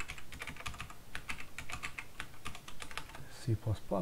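Fast typing on a computer keyboard: a quick run of key clicks that thins out near the end.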